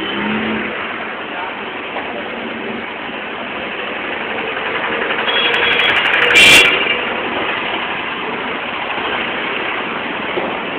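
Street traffic: vehicle engines running in a steady wash of noise, with a brief, loud burst about six and a half seconds in.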